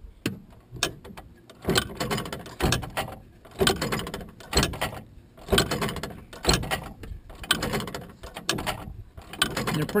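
Magnetic Flagman wigwag crossing signal's electromagnetic mechanism running, powered at 12 volts: a loud, regular mechanical clack about once a second as its swinging armature drives the banner back and forth.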